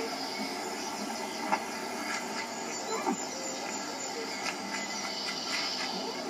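Quiet stretch of a VHS trailer's soundtrack coming from a TV speaker: a steady hiss with a few faint brief sounds.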